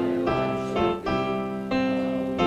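Piano playing a hymn in full held chords, the chord changing about every half second.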